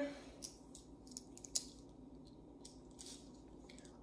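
Quiet room with light handling noise: a few faint clicks and ticks, the sharpest about one and a half seconds in, as a length of string is stretched out and measured by hand.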